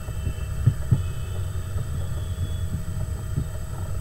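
Steady low background rumble with no speech, broken by a few soft low thumps about a second in and again near the end.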